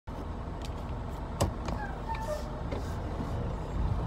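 Steady low rumble of a car being driven, heard from inside the cabin, with one sharp click about a second and a half in.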